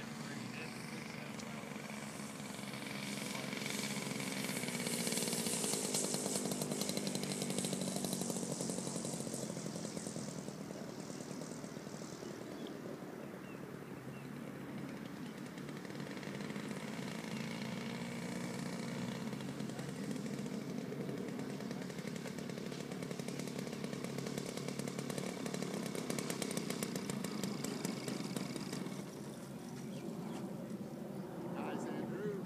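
Gas engine of a radio-controlled Pitts Special model biplane running in flight, its pitch shifting as it manoeuvres. It swells loudest about five to eight seconds in, fades, holds steady, then drops away near the end as the model comes down onto the runway.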